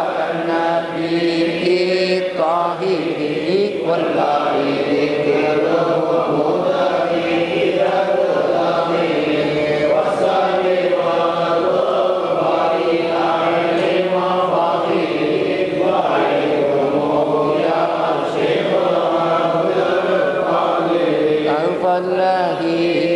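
Men's voices chanting an Arabic devotional baith (a praise poem for a Sufi saint) together in a steady, unbroken melodic recitation.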